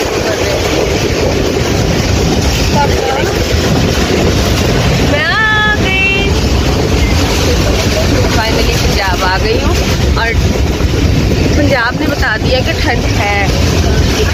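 Steady rumble and rush of a moving passenger train heard from inside the carriage with the windows open, with passengers' voices breaking through now and then.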